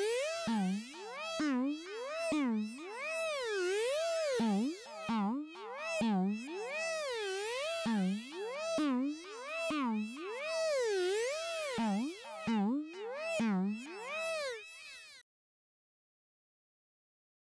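Kairatune software synthesizer playing its 'Sweeping Threat Bass' preset: a buzzy pitched tone whose pitch sweeps up and down in repeated loops, each note starting with a click. It cuts off suddenly near the end.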